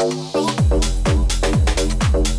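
Bass-house electronic dance track: pulsing synth chords, then about half a second in the beat drops and a four-on-the-floor kick drum and heavy bass come in, about two kicks a second.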